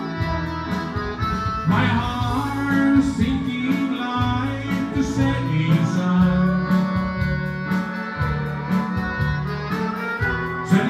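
Instrumental break of a country waltz-time song: accordion and steel guitar playing the melody over a bass line and a steady beat.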